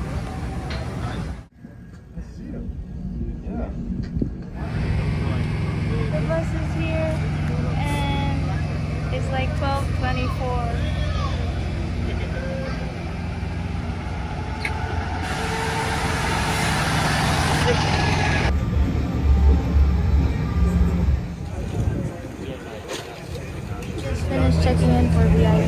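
Tour coach's diesel engine running steadily at low revs, with voices over it. About fifteen seconds in, a loud hiss of released air from the coach's brakes lasts about two and a half seconds.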